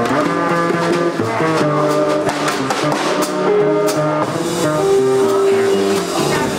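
Small jazz combo playing live: saxophone, guitar, upright bass and drum kit, with cymbal and drum strokes under a moving melody line that settles on one long held note near the end.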